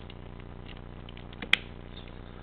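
Plastic parts of a Transformers Superion combiner toy being handled and fitted together: faint scattered plastic ticks, then one sharp click about one and a half seconds in as the Skydive limb piece snaps into place.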